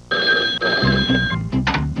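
A cartoon telephone ringing once for just over a second, with a music bed starting under it partway through.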